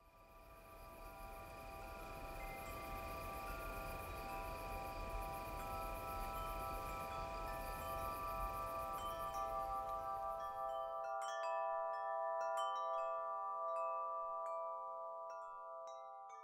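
Shimmering chime tones swell in and hold at several pitches over a soft rushing noise. About eleven seconds in the noise drops away, and bright tinkling chime strikes scatter over the ringing tones.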